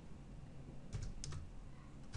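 Faint typing on a computer keyboard: a few soft keystrokes, clustered about a second in.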